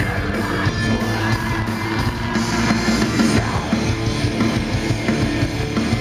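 Heavy metal band playing live: distorted electric guitars over bass and drum kit, heard through the stage PA from among the crowd.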